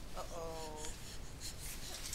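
An infant's brief, whiny voice note, one steady pitch held for about half a second, after a crying fit. Faint scratching and clicking sounds come and go around it.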